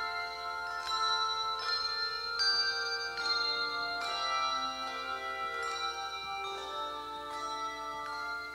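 A handbell choir playing a slow piece: chords of bells struck about every second, each left ringing into the next.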